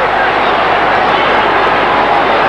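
Stadium crowd noise: a steady din of many voices at a rugby league match, heard through an old television broadcast.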